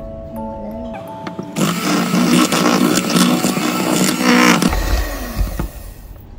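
Electric hand mixer beating butter in a stainless steel bowl. It switches on about a second and a half in, runs steadily for about three seconds, then cuts off.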